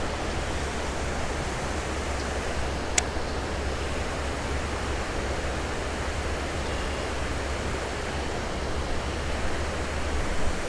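Water pouring over a low dam spillway, a steady rushing, with one sharp click about three seconds in.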